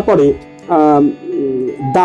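A person's voice speaking in drawn-out syllables over background music.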